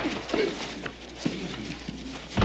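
Two men scuffling in a fistfight: a scatter of short knocks and thuds from bodies and blows, with a grunt early on.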